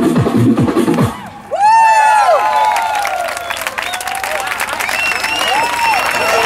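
Dance music with a steady beat cuts off about a second in. A crowd then breaks into whoops and cheers, with clapping that carries on to the end.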